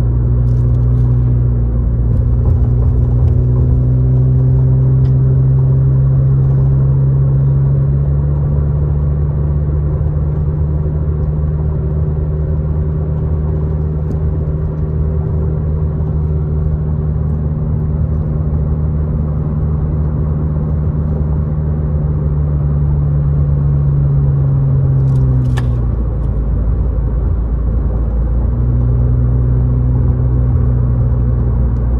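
Car engine and tyre noise heard from inside the cabin while driving at steady speed: a low, even engine drone over road rush. Near the end the engine note sinks and fades out for a couple of seconds, then comes back.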